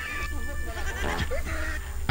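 Faint laughter in short, pitched bursts, with a steady low hum underneath.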